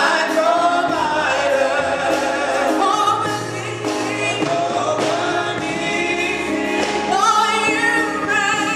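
Gospel choir singing with instrumental accompaniment, held bass notes changing every second or so beneath the voices.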